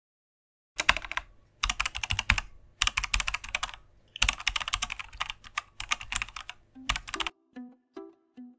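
Computer keyboard typing in several quick runs of keystrokes with short pauses between them. Near the end, plucked-string music begins.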